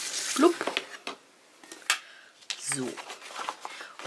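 A clear plastic ruler and a sheet of paper being handled on a cutting mat: rustling with a few sharp clicks and taps, the loudest about two seconds in. A brief murmur of voice comes near the middle.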